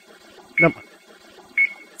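Short high beeps about once a second from a game-show countdown clock ticking down, with a single spoken "No" about half a second in.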